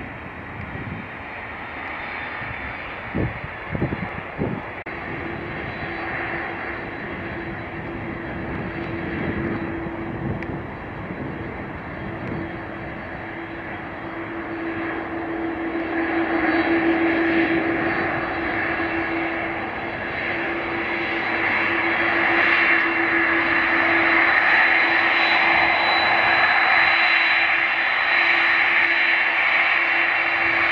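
Boeing 767-300 airliner's jet engines running at low taxi power: a steady whine over a rushing hiss with a held hum beneath. It grows louder in two steps from about halfway as the aircraft draws nearer. A few brief low thumps come about three to four seconds in.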